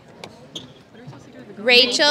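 Low crowd murmur with a couple of soft knocks, then near the end a loud, high-pitched voice shouting, like someone in the crowd cheering for a graduate.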